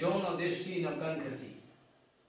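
A man speaking, his voice trailing off about one and a half seconds in, leaving near silence.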